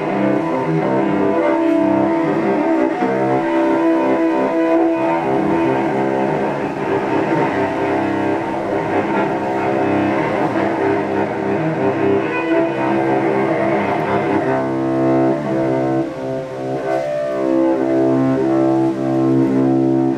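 Solo cello, bowed: long sustained notes sounding continuously, with a brief dip and a change to clearer, steadier held tones about three-quarters of the way through.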